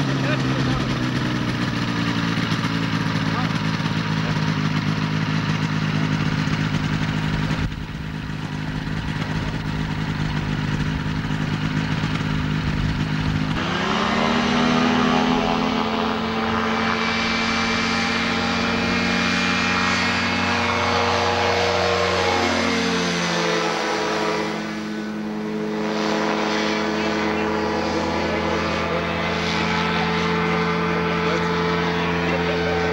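Engine and propeller of a motorized hang-glider trike running steadily, then throttled up sharply about halfway through for the takeoff and climb, holding a higher steady pitch with a brief dip a few seconds later.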